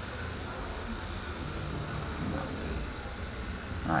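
Tattoo machine running with a steady low hum, its needle out and moving.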